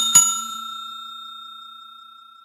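Notification bell sound effect: a double ding at the start, then one bright ringing tone that fades away slowly.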